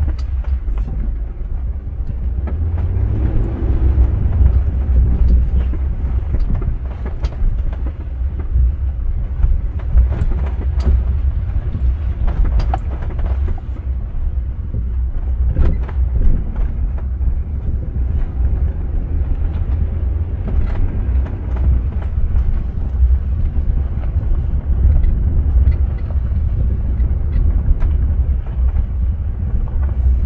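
2004 Range Rover HSE driving along a dirt trail: a steady low rumble of tyres on the dirt and the engine, with scattered knocks and rattles over the bumps.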